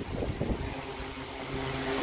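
BILT HARD 18-inch industrial fan running on the highest of its three speeds: a steady motor hum under a rush of air, with the airflow buffeting the microphone.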